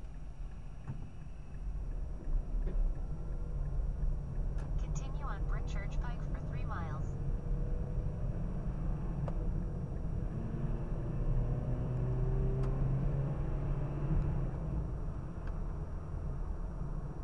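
Car cabin noise while driving: a steady low rumble of engine and tyres, with the engine note shifting as the car pulls away and speeds up. About five seconds in there is a brief stretch of a voice-like sound lasting a couple of seconds.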